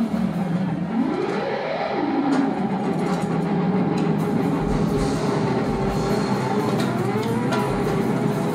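Live rock band in a slow, spacey jam: sustained electric instrument tones slide up and back down in the first couple of seconds, then hold a steady note, with another upward slide near the end.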